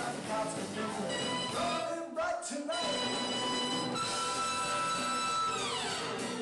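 Live band with a horn section of saxophone and trumpet, with a man singing. About two seconds in the music briefly breaks off; long held notes follow and slide down in pitch near the end.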